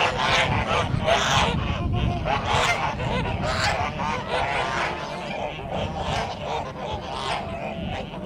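Kholmogory geese honking, several birds calling over and over in overlapping honks, a little quieter in the second half.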